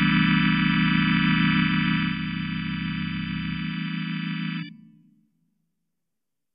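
Roland Atelier Combo AT-350C electronic organ holding a sustained final chord, steady in pitch and loudness. The lowest bass notes drop out after about three and a half seconds. The rest of the chord is released near five seconds with a short fade.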